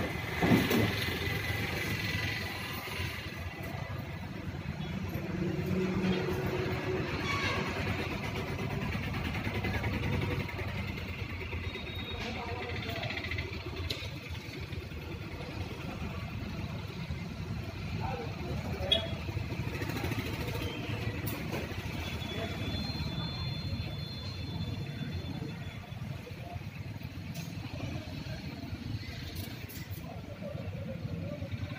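Indistinct background voices over steady ambient noise, with a sharp click about half a second in and another about two-thirds of the way through.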